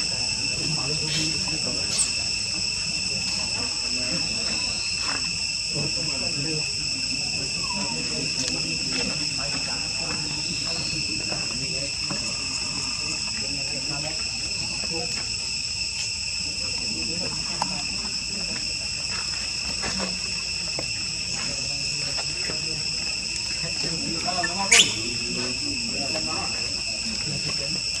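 Steady high-pitched drone of insects, several tones held without a break, with faint voices underneath and a sharp click near the end.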